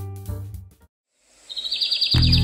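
Piano music fading out, a short silence, then a small bird chirping a quick run of high notes about a second and a half in.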